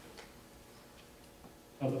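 Quiet room tone with a few faint, soft ticks, then a man's voice starts near the end.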